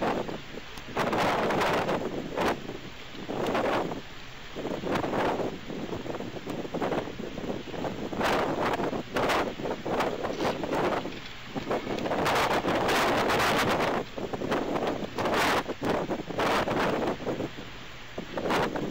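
Wind buffeting the nest camera's microphone, coming and going in gusts every second or so.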